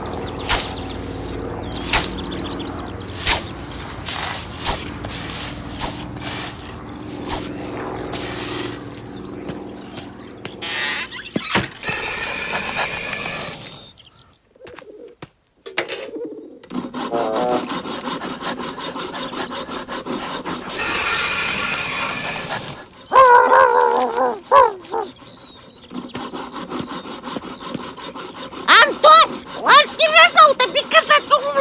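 A scythe swishing through grass in regular strokes, roughly one every second and a bit, over a soft steady background. Later come loud, high, wavering cries and, near the end, quick high chatter.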